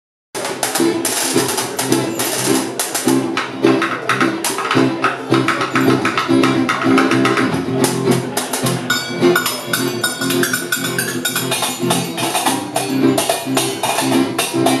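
Live acoustic music: an acoustic guitar strummed in a brisk, steady rhythm with percussion. A held, higher melodic line joins about nine seconds in.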